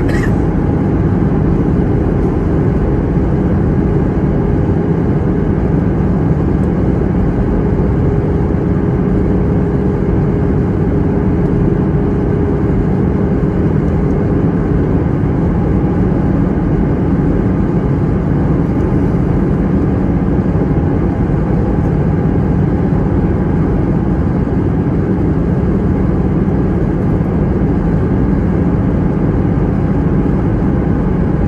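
Steady cabin noise inside an Airbus A321 on descent, heard from a window seat over the wing: a continuous low rumble of engines and airflow. A faint steady hum runs under it and fades out about halfway through.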